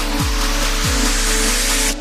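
Electronic dance music with a bass that drops in pitch twice and a loud hiss running through it, all cutting off suddenly at the end.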